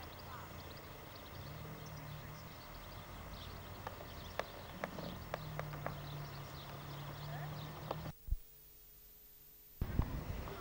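Outdoor ambience: a low steady hum with faint high chirps and a scattered run of sharp clicks. The sound cuts out for nearly two seconds near the end.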